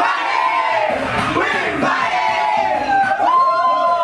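A group of people shouting and singing together over music, with a long held note near the end.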